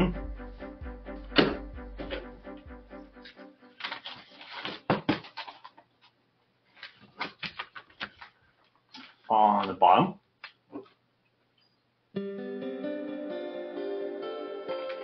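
Background music that stops about three seconds in. Then a run of light clicks and taps from handling stacked paper and binder clips on a desk, and the music starts again near the end.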